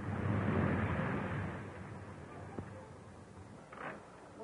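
A truck engine running loudly for about a second and a half, then fading away.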